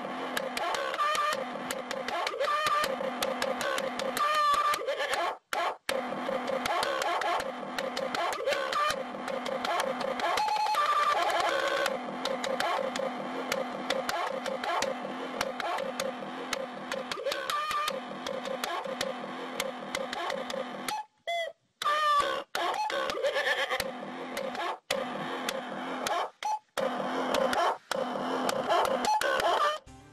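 Dubstep music made with a toy farm-animal sound keyboard: a repeating beat with looped toy sound samples. It cuts out briefly a few times.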